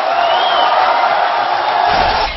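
Studio audience applauding and cheering, a dense, even clatter with a steady held tone running through it; a low rumble comes in near the end.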